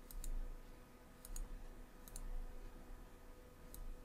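Computer mouse clicking faintly: three quick pairs of clicks about a second apart, then a single click near the end.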